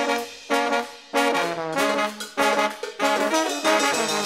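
New Orleans brass band horn section playing a run of short, punchy phrases, about two a second with brief gaps between, in an instrumental stretch with no vocals.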